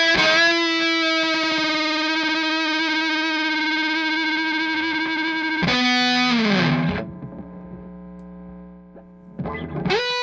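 Nash T-57 Telecaster played through a Walrus Audio Jupiter fuzz pedal into a Morgan RCA35 amp: one long fuzzed note held for about five seconds. Then a new note slides down in pitch and dies away to a faint hum. Quick picked notes start again just before the end.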